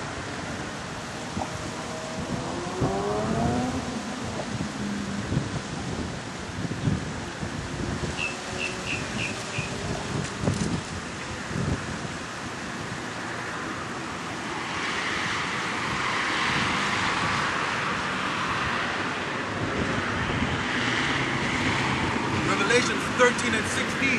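Road traffic going by, with one vehicle passing for several seconds in the second half, over steady outdoor background noise. Thin Bible pages rustle softly as they are leafed through.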